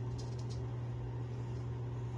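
Naked Armor Erec straight razor scraping through lathered stubble on the neck, a few short strokes in the first half-second, over a steady low hum.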